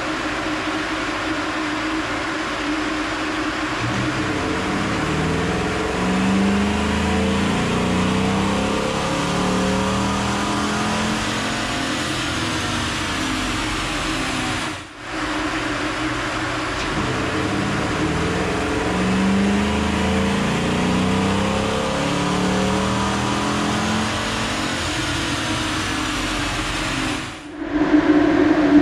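Dodge Durango R/T's 5.7 L HEMI V8 pulling at wide-open throttle on a chassis dyno in stock form, with the stock air box. Its pitch climbs steadily as the revs build through a run, and this happens twice with a short break about halfway.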